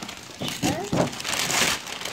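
Gift wrapping paper crinkling and rustling as a present is unwrapped, loudest just after the middle, with a brief voice sound about half a second in.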